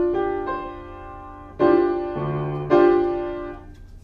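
Piano playing a D minor 7 chord in four-part close voicing with the fifth replaced by the 11th. The chord is struck several times and left to ring and fade each time, with a low bass note under it briefly past the middle.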